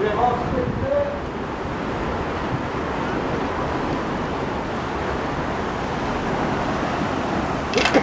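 Steady rushing outdoor noise aboard a paddle steamer, with faint voices of people on deck in the first second and a short sharp sound with a voice just before the end.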